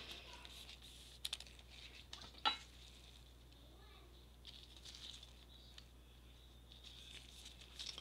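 Soft crinkling of plastic card sleeves and top loaders being handled, with a couple of light clicks of plastic about a second and two and a half seconds in.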